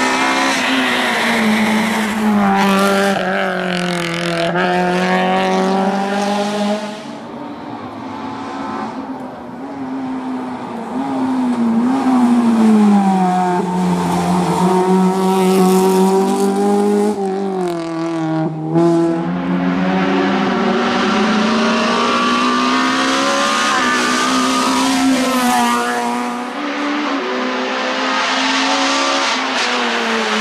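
Honda Civic race car's four-cylinder engine revving hard on a hillclimb. Its pitch rises through each gear, then drops sharply at gear changes and on braking for bends, over and over. It dips quieter for a few seconds around a quarter of the way in.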